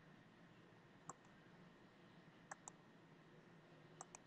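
Faint computer mouse clicks: a single click about a second in, then a quick double click about two and a half seconds in, over near-silent room hiss.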